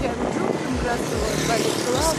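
Road and traffic noise heard while riding along a street, with a low thud about twice a second and voices in the background.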